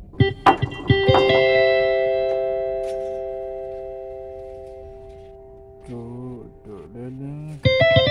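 Yamaha PSR-SX900 arranger keyboard: a chord struck about a second in and held, fading slowly over several seconds. Near the end a new chord comes in with quickly repeated notes.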